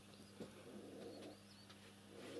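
Near silence: faint room tone with a few faint, short, high chirps from a bird.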